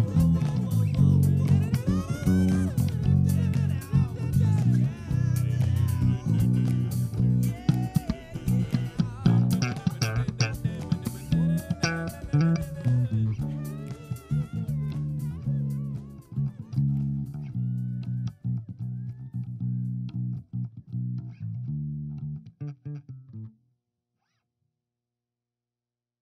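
Electric bass guitar playing along with the song's recording, which carries gliding vocal or guitar lines above the bass. The music grows quieter from about halfway through and stops about 23 seconds in, leaving silence.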